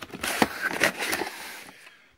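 Cardboard CPU retail box being handled and opened: rustling and scraping with a few sharp taps, the strongest about half a second in.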